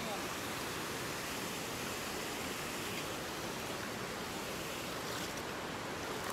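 A steady rushing hiss of outdoor noise with no clear events in it.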